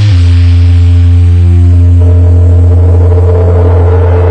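Television theme music closing on a loud, held low chord that sustains without a beat, with a higher note joining about two seconds in.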